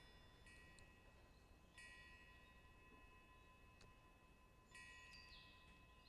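Near silence: room tone with a faint steady high tone, and fainter clusters of high ringing, chime-like tones that start up again several times.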